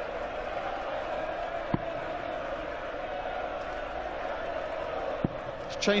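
Steady murmur of an arena crowd, with two sharp thuds about three and a half seconds apart as darts strike the dartboard.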